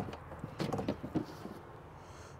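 A click, then a quick run of light knocks and rattles, as the travel trailer's exterior pass-through storage door is unlatched and swung open.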